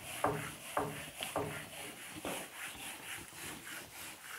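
Whiteboard duster rubbing across a whiteboard, erasing: several brisk back-and-forth strokes, strongest in the first two and a half seconds, then lighter rubbing.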